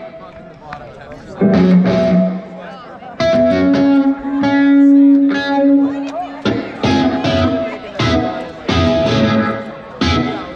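Electric guitar played through an amplifier with effects during a soundcheck: chords are struck and left to ring, with one long held note in the middle.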